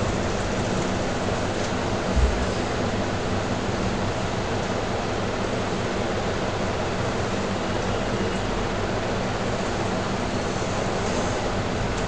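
Steady background hiss with a faint low hum, the room and recording noise left when nobody speaks. There is a single brief low thump about two seconds in.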